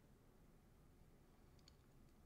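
Near silence: faint room tone, with a couple of faint clicks near the end.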